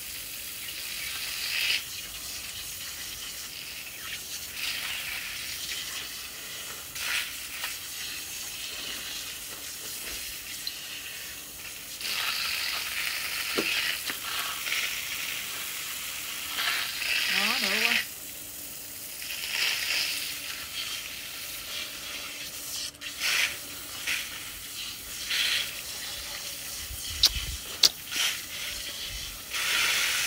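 Water spraying from a garden hose nozzle onto plastic sheeting and a gutted wild boar carcass, hissing and splattering in repeated swells, louder and softer as the stream is moved over the meat. A couple of sharp clicks come near the end.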